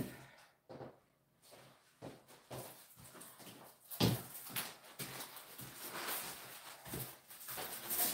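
Faint handling noises: scattered light knocks and rustles as a canvas is fetched and moved, with one sharper knock about four seconds in.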